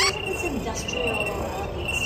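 Short, high, even-pitched chirps like a cricket's, repeating every half second or so, over a low murmur of voices.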